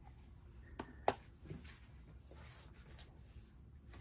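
Quiet handling of a plastic ink pad case as it is brought onto the desk and opened, with two light clicks about a second in and a few fainter ticks later, over a low steady hum.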